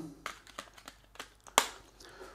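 Black glass design rocker covers of a Gira Tastsensor 4 KNX push-button snapping into place as they are pressed on: a series of small clicks, the loudest about one and a half seconds in.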